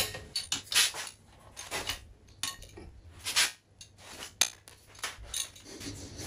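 Irregular sharp metallic clicks and clinks of a wrench and socket on the cylinder head bolts of a Peugeot 206 engine, as the bolts are tightened by angle.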